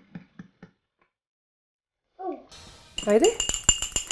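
Small metal baking tins clinking against each other and the worktop, with thin metallic ringing that lingers between the clinks. The clinking starts after a stretch of silence, about two and a half seconds in.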